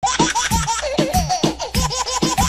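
Music starts abruptly after a brief silence: a fast electronic beat of drum hits with short, bending high notes repeating over it.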